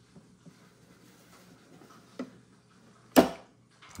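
The latch on a snake enclosure's lid snapping shut: one loud, sharp click a little after three seconds in, after a fainter click about two seconds in, with light handling noise between.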